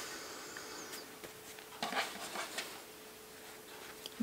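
Faint rustling and sliding of stacked cotton quilting fabric squares being handled and shifted on a wooden table, with a few soft scuffs about two seconds in, over a faint steady hum.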